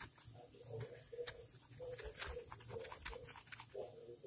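Quick, irregular rubbing and scratching strokes of a surface being scrubbed to clean off marker.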